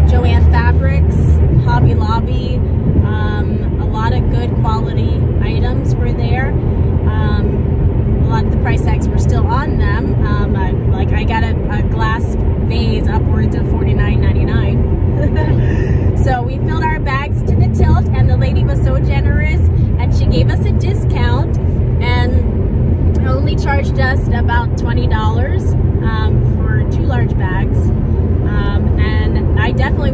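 Steady low drone of a car's engine and road noise inside the moving cabin, with people talking over it.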